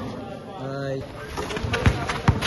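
Basketball dribbled on a concrete court: a couple of sharp bounces in the second half, after a short held vocal call.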